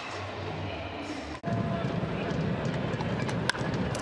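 Ballpark crowd noise from a baseball broadcast, which changes abruptly and gets louder about a second and a half in as one clip cuts to the next. Near the end comes a single sharp crack of a bat hitting the ball hard.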